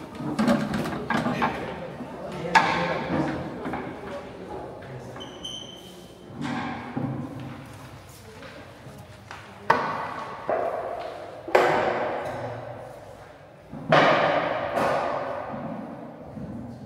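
About four loud thumps or slams, each ringing out in a long echo through a large marble hall, over the indistinct chatter of a crowd of visitors.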